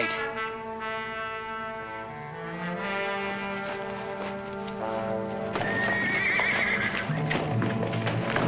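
Orchestral score with held brass notes that shift in pitch. About halfway through, a horse whinnies with a wavering call and its hooves clatter.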